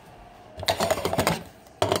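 Canned beans tipped out of an open can into a metal colander in the sink: a quick clatter of many small knocks for about a second, then one sharp knock of the can near the end.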